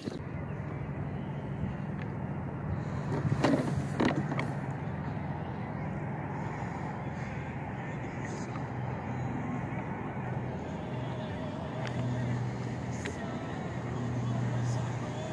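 Boat motor running steadily with a low hum, over water and wind noise, with two sharp knocks a few seconds in.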